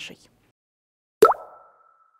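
Transition sound effect for a news section title card: a sudden pop that sweeps quickly upward in pitch, then one ringing tone that fades out over about a second.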